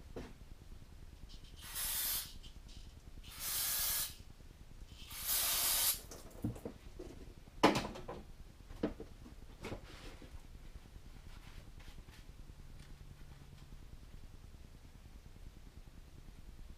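Three short hissing bursts of spray, each under a second, followed about eight seconds in by one sharp click and a few lighter clicks.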